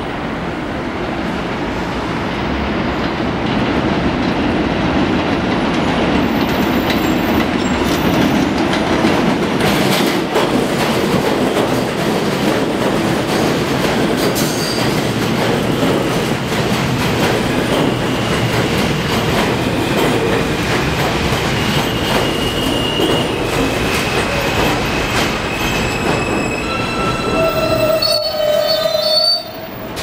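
R160 subway train arriving on an elevated line: wheel-on-rail rumble and clatter grow louder as it comes alongside the platform. From about two-thirds of the way in, high steady squeals from wheels and brakes come in as it slows to a stop. The sound breaks off suddenly just before the end.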